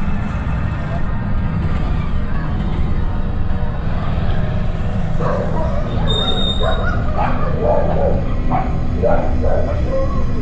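A dog barking repeatedly from about halfway in, over a steady low rumble.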